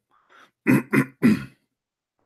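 A man clearing his throat in three short, quick bursts about a second apart, with a faint one just before. His throat is sore and tired from days of talking.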